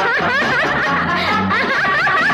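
A female playback singer's laughing vocal, quick 'ha-ha' runs gliding up and down in a high register, over a Tamil film song's accompaniment with a steady low beat.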